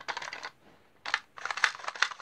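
Hard plastic clicking and rattling as a blue plastic toy pistol is handled: a cluster of quick clicks at the start, a pause, then a longer, denser run of clicks in the second half.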